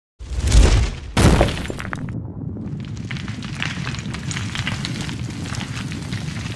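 Sound effects of stone cracking: a deep boom, a second sharp cracking hit about a second in, then a steady crumbling crackle.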